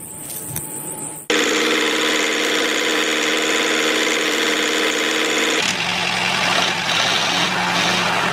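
Small electric motor of a homemade model tractor running with a steady buzzing whine. It starts suddenly about a second in, and its pitch drops lower a little over halfway through.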